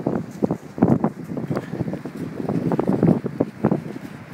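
Wind buffeting the microphone in irregular gusts, a rough low rumble.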